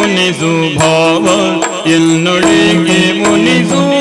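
Yakshagana ensemble music: a melodic vocal line that bends and glides over a steady drone, with drum strokes and jingling percussion.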